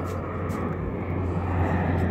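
Airplane flying overhead: a steady low drone.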